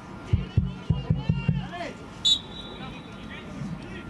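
Voices calling out on a football pitch, then about two seconds in one short, shrill blast of a referee's whistle, signalling the kickoff that restarts play after a goal.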